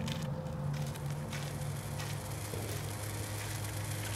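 A low, steady droning hum with faint crackling over it.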